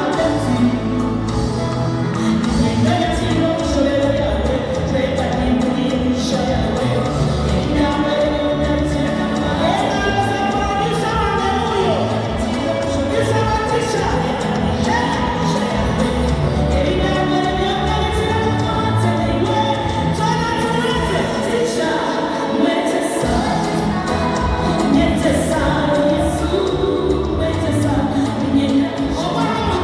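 A woman singing into a handheld microphone over amplified backing music with a steady beat.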